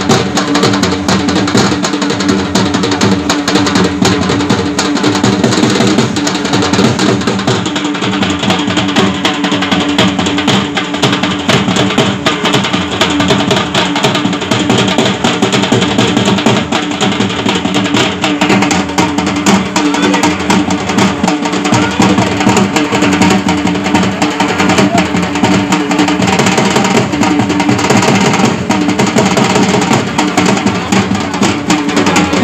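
Dhol drum beaten in a fast, dense, unbroken rhythm, with a steady low drone held beneath it.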